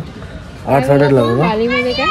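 Speech: a man talking, starting about two-thirds of a second in after a brief pause.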